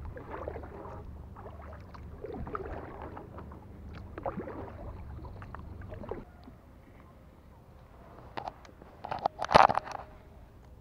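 Kayak paddle strokes swishing through the water about every two seconds over a low rumble, then a quieter stretch. Near the end comes a quick cluster of sharp knocks and clatter, the loudest sounds here.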